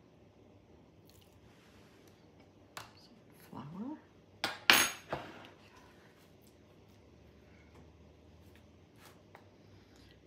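Kitchen utensils and dishes clattering on a counter during hand food preparation: a few light clicks, then a sharp clatter a little before halfway that is the loudest sound, and a couple of soft taps near the end.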